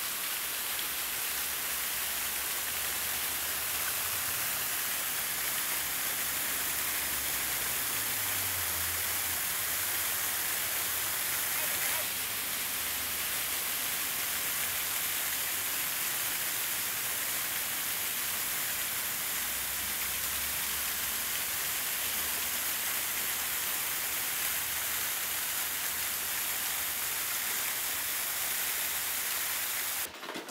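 Water-curtain fountain: a steady, even rush of falling, splashing water.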